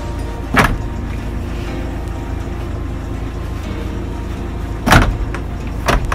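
Hard plastic interior side trim panel of a van being pressed and knocked into place by hand: three sharp knocks, about half a second in, near five seconds and at the very end, over a steady low rumble.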